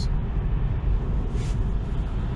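Tyre and road noise inside the cabin of an electric Tesla Model 3 cruising at about 93 km/h: a steady low rumble with no engine sound.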